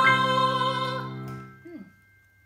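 A small group singing a held long tone in falsetto over a sustained keyboard chord struck at the start; the voices stop about a second in and the chord dies away, followed by a brief vocal sound near the end.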